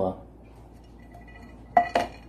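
Empty tin cans clanking together as they are handled and pulled apart, with one sharp, ringing metallic clank near the end.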